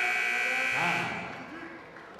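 Time-up buzzer sounding steadily and cutting off about a second in, signalling the end of the bout's time, with a man's shout as it stops.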